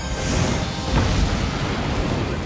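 Propane depot explosion: a blast and a rolling low rumble that swells to its loudest about a second in, with music underneath.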